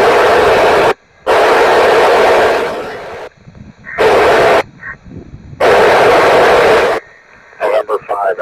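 FM ham radio receiving an FM satellite downlink: loud bursts of static hiss that open and cut off sharply, four times, as the squelch opens on transmissions too weak to be readable.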